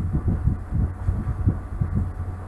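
Uneven low rumble over a steady low hum: background noise picked up by the narration microphone, with no speech.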